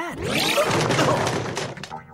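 Cartoon crash sound effect: a body landing on classroom furniture, which crashes and breaks, lasting most of two seconds and trailing off near the end.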